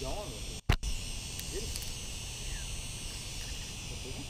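A steady, high-pitched insect chorus in the background, with faint voices at moments. About 0.7 s in, the sound drops out briefly and a short sharp knock follows.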